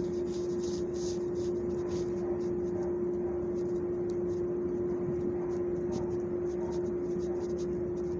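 A steady droning hum with a low rumble underneath, the loudest sound throughout. Over it, light repeated scratching of a rubber grooming glove rubbing a dog's coat.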